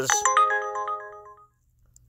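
Uber Eats driver app's incoming-offer alert tone playing from a phone: several bell-like notes struck in quick succession, ringing on and fading out about a second and a half in.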